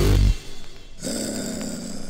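Hardcore electronic music: a loud, deep bass note cuts off just after the start, giving way to a quieter break in which a held synth tone comes in about a second in.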